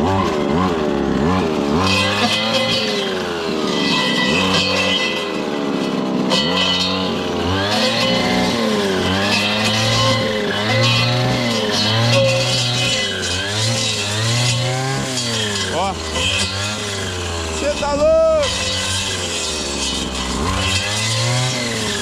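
Two-stroke brushcutter engine running hard, its pitch dipping and recovering again and again as the blade bites into thick brush. The strained note comes from the thick stalks, not from the blade striking the soil.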